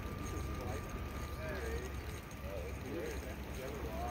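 Indistinct voices of people talking at a distance, too faint for the words to be made out, over a steady low rumble.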